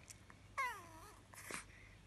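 A Chihuahua whining softly: one falling whine about half a second in, and a shorter, fainter one near the end.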